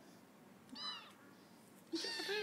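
A kitten gives one short, high meow about a second in.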